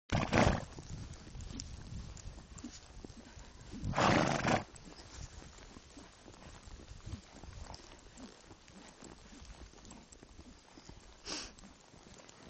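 A horse being ridden through snow: soft, irregular hoof falls, with a loud rushing burst at the start, a louder one about four seconds in and a smaller one near the end.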